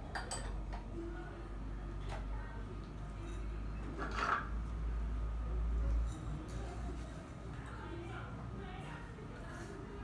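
Glass tea jars and lids clinking as they are handled on a tabletop, a few separate sharp clinks, the loudest about four seconds in, over a low steady hum.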